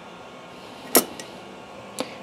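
A single sharp clack about a second in, with a fainter tick just after, as the circuit board of a CNC controller is handled and set down on the workbench.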